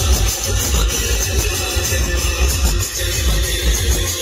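Loud music with a heavy, pulsing bass beat, played through a car's sound system.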